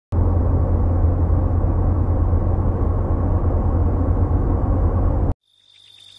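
A loud, steady low rumble that starts suddenly and cuts off abruptly after about five seconds. Faint cricket chirping follows near the end.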